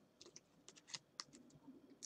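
Faint, scattered clicks and ticks of playing cards being handled as a card is drawn from the deck.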